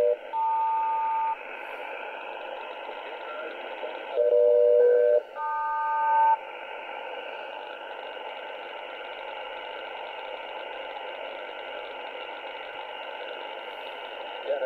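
SELCAL selective-calling tones heard over HF single-sideband radio: a lower two-tone chord and then a higher two-tone chord, each about a second long, as a ground station alerts a particular aircraft. The call is sent twice, the second starting about four seconds in, and is followed by steady shortwave static hiss.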